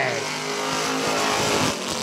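Two vintage stock cars' engines running hard as the cars accelerate side by side just after the green flag.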